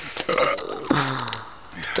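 A person belching once, a low, drawn-out burp about a second in lasting around half a second, brought up after gulping down a whole can of carbonated soda by shotgunning it.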